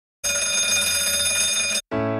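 A bell ringing steadily for about a second and a half, then cutting off abruptly; an electric piano chord comes in right at the end.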